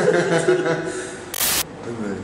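Two men laughing and talking, followed about one and a half seconds in by a short, sharp burst of hiss lasting about a third of a second.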